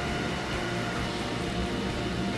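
Froling FHG Turbo 3000 boiler's draft fan running steadily, a rushing hum with a faint steady tone, drawing air and the kindling flame from the open ignition chamber into the boiler.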